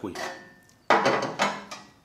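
Steel firebox of a small portable pizza oven being handled and set down on a tabletop: a brief metallic ring at first, then a louder clank about a second in that rings and dies away.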